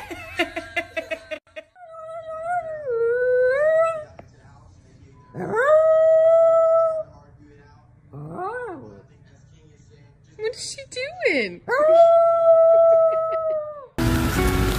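A dog howling: a run of long, drawn-out calls, some rising and then held steady, others short up-and-down glides. It follows a brief burst of laughter at the start.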